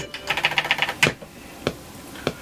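Fingers tapping the rubber pads and buttons of an Akai MPC3000 sampler while the beat is stopped: a quick run of clicks in the first second, then single clicks about every 0.6 seconds.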